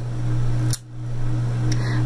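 A steady low hum that cuts out for a moment just under a second in, right after a short click, then resumes.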